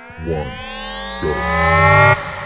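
Countdown sound effect: a synthesized riser sweeps steadily upward in pitch and grows louder, cutting off suddenly at the end, over low pitched hits about once a second.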